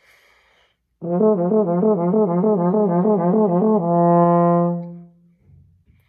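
French horn playing a warm-up lip slur, alternating quickly and smoothly between two neighbouring overtones. About four seconds in it settles on the lower note and holds it for a second before fading out. A soft breath noise comes before it.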